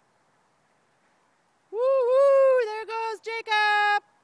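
A high-pitched cheering cry from a person's voice starting about two seconds in: one long held note that breaks into a few shorter calls and cuts off at the end.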